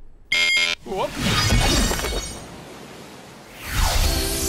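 Cartoon magic teleport sound effects. A short, loud buzzing zap comes about half a second in, followed by quick swooping glides and a high sparkling shimmer, then a swelling whoosh near the end as a swirling portal opens.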